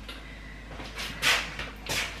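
Cookware being handled at the stove: two short clattering, scraping sounds, the louder one a little past a second in and a smaller one near the end.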